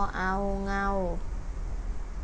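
A woman's voice slowly pronouncing the Thai syllable 'ngao' (เงา), one long, level-pitched syllable that ends a little over a second in.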